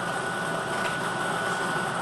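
Air-mix lottery ball machine running: a steady rush of blown air with a thin steady whine, as a numbered ball is blown up into the clear acrylic catch chamber.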